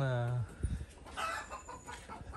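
Chickens clucking in the background, with one short call about a second in.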